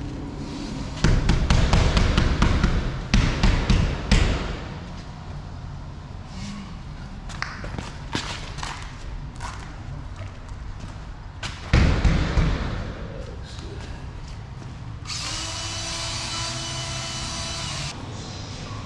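Cordless drywall screw gun driving screws through 5/8" drywall into steel studs, in loud bursts of a few seconds with knocks against the board, the first about a second in and another near the middle. A steady whine runs for about three seconds near the end.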